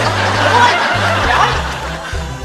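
A man's long, breathy exhale, letting out breath he had been holding while straining at a chest press, easing off near the end, over background music with a steady bass line.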